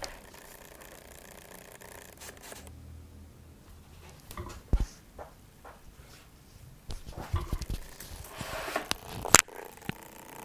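Handling noise of a clip-on lavalier microphone being picked up and moved: faint rubbing and rustling, with a few sharp knocks, the loudest about five seconds in and just before the end.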